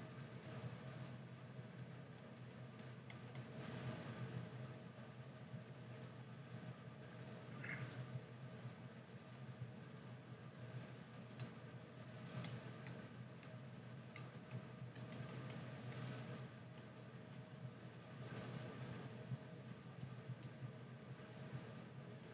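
Faint, scattered ticks and clicks with a few light scratchy strokes from a stylus and keys being worked while painting at a computer, over a steady low hum.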